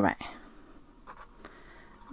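Pen writing on paper: faint, light scratching strokes following a spoken word at the start.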